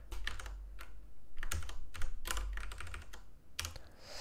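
Typing on a computer keyboard: a run of irregular keystrokes.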